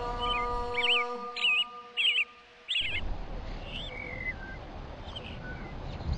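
Birdsong: a run of short warbling chirps over a sustained music chord that fades out about two and a half seconds in, with a few more chirps later over a steady hiss.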